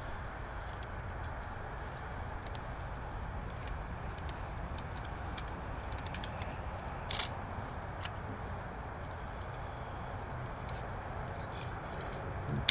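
Steady low outdoor rumble with a few faint clicks and taps, the clearest about seven seconds in.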